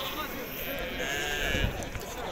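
A sheep bleating once, a wavering call lasting about a second, over a murmur of voices from the crowded livestock pens.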